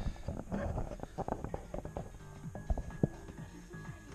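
Handling noise: a camera being set down, then bed and seat cushions being moved about in a motorhome, giving a run of light knocks and bumps. Faint music with held notes comes in about halfway.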